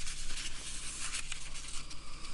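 A sheet of origami paper rustling as it is folded over and pressed flat by hand on a cutting mat, with a few small crinkles.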